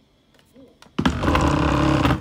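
Near silence, then about a second in a sudden loud scraping, rubbing noise close to the microphone.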